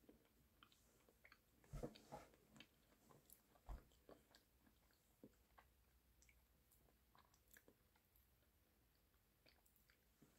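Faint mouth sounds of someone chewing a piece of Kinder milk chocolate: a few soft smacks and clicks about two seconds and four seconds in, then near silence.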